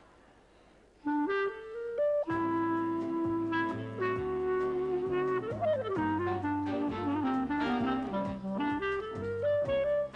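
Clarinet playing a melody. It starts about a second in with a quick rising run of notes, and an accompaniment with a steady bass line comes in about two seconds in.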